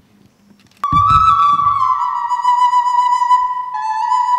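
A small flute playing a long, clear held note that starts abruptly about a second in with a brief low thump. The note sags slightly in pitch and moves to another note near the end.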